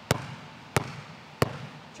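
Basketball dribbled hard on an indoor gym floor: three sharp bounces about two-thirds of a second apart, in a behind-the-back and crossover dribbling drill.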